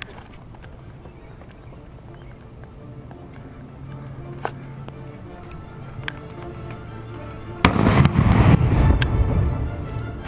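A tennis ball bomb (a tennis ball packed with a half stick and two quarter sticks) going off with one sharp bang about three-quarters of the way in, followed by about two seconds of loud rushing noise. Before it there are only a few light clicks.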